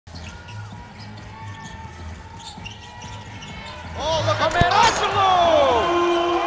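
Basketball game sounds on a hardwood court: a ball bouncing and sneakers squeaking. They get much louder about four seconds in, with a burst of short squeaks and a hard thud.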